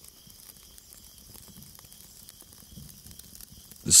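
Faint steady hiss with scattered soft crackles, a quiet background ambience bed; a voice comes in right at the end.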